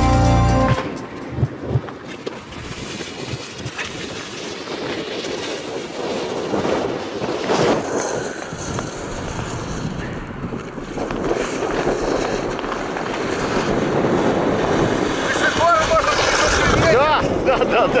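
Wind buffeting the microphone over the hiss and scrape of a snowkite board sliding across snow and ice, growing slowly louder. Background music cuts off about a second in, and a voice calls out and laughs near the end.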